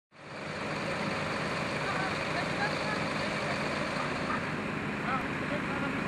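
Steady running of fire engines, a constant engine hum, with faint voices of people nearby.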